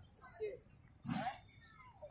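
Mostly quiet, with two brief faint voice sounds from people nearby, about half a second and about a second in, over a faint steady high-pitched tone.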